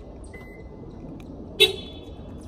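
A single short beep from a Subaru Crosstrek as its doors lock from the key fob, about a second and a half in. A faint thin steady tone runs through the first second.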